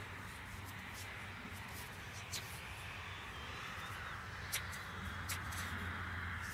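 Faint, steady outdoor background noise with a low hum, broken by a few brief clicks.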